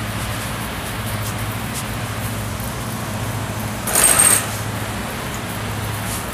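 Wire shopping cart rolling across a store floor, with a steady low hum underneath and a brief rattle about four seconds in.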